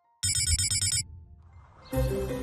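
A short electronic musical sting: a rapid high trill, much like a ringing phone, over a low bass hit, lasting under a second and then fading out.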